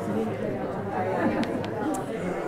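Low chatter of several people in an audience talking among themselves at once, no single clear voice, with a few small clicks in the second half.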